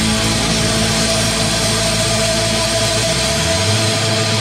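Hardcore punk recording breaking into a held wall of distorted guitar noise with a steady ringing tone and no drum beats.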